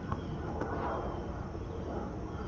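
Steady outdoor background noise with a low rumble, plus a few faint clicks.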